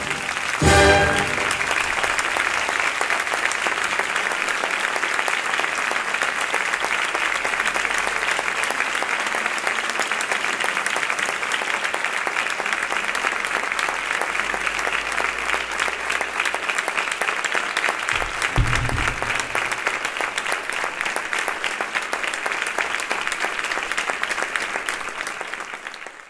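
A brass-and-woodwind concert band's final accented chord, about a second in, followed by sustained audience applause that fades out near the end. A brief low thump sounds partway through the applause.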